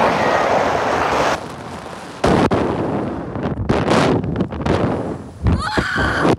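Wind rushing and buffeting over the microphone of a camera mounted on a Slingshot reverse-bungee ride capsule as it swings through the air. It comes in loud gusts: a long rush at first, a sudden blast a little after two seconds, more gusts later, with a rider shouting near the end.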